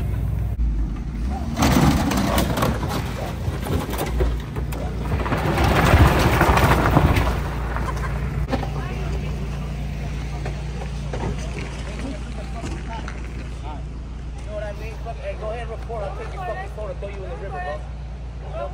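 Motor vehicle engine running steadily at idle, with two louder, rougher surges about two seconds in and around six seconds in. Faint voices come in near the end.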